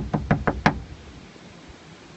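A quick run of about six sharp knocks and taps within the first second, handling noise as fingers knock against the phone near its microphone, then only faint hiss.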